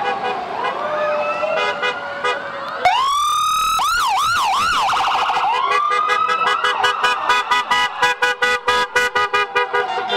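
Emergency vehicle sirens as ambulances pass close by. Fainter sirens wind down in pitch at first. About three seconds in a loud siren cuts in, rises and sweeps up and down, then warbles fast, and then turns to a rapid on-off pulsing for the last few seconds.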